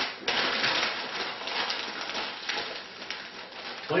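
Sheets of plain packing paper rustling and crinkling as they are folded and wrapped around a glass decanter, loudest in the first second and easing off toward the end.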